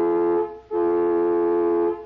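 Car horn blown in two steady blasts, the second longer, each holding several tones at once.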